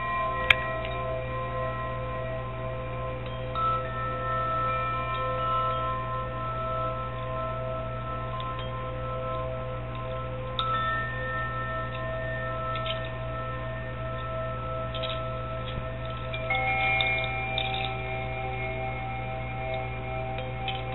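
Chimes ringing in long, sustained bell-like tones, with fresh notes sounding a few times, several seconds apart, over a steady low hum.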